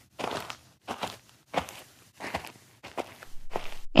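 Cartoon footstep sound effect: about six soft steps, roughly one every two-thirds of a second.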